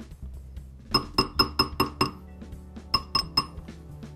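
Ball-peen hammer striking a sterling silver ring on a steel ring mandrel: quick light metallic taps, about five a second, each ringing briefly. A run of about six taps starts about a second in, then after a short pause a second run of about four.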